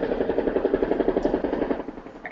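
A machine pulsing rapidly and evenly at about ten beats a second, fading near the end.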